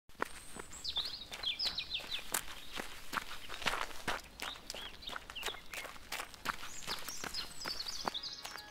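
Footsteps on a gravel path, about two to three steps a second, with birds chirping in the background.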